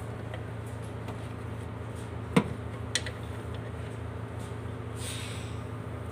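Two sharp clicks about half a second apart, the first the louder, from hand work on parts in the engine bay, over a steady low hum; a brief soft rustle follows near the end.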